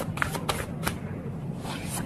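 Stiff oracle cards handled in the hand: a few short, crisp card clicks in the first second, then a longer rustle of cards near the end.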